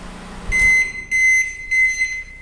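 Brastemp BMS 27-litre microwave oven, with its casing off, stops running its hum about half a second in. It then gives three high beeps about 0.6 s apart, signalling the end of the heating cycle.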